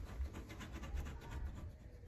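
A clear plastic knife scraping sticky cooking-grease residue off a wooden cabinet frame. It makes faint, rapid scratching strokes that thin out near the end.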